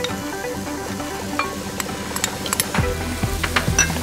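Spiced chickpeas frying in a metal pot, sizzling with scattered crackles and a few utensil clinks, under background music with a melody of short notes. The crackling grows denser toward the end.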